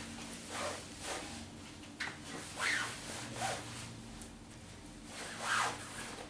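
Fabric of a trench coat rustling and rubbing as its belt is handled and pulled around the waist, in several soft swishes.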